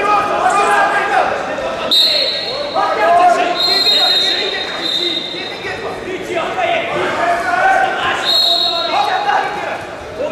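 Shouting voices echoing in a large sports hall. A referee's whistle is blown about two seconds in to restart the wrestling bout, and longer, steady whistle blasts follow, one of them about a second and a half long.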